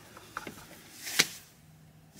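Mazda Miata soft-top latch handle being pushed shut: a faint click, then a single sharp click a little over a second in as the latch locks. The latch's tension screw has been tightened, so it closes firmly instead of loosely.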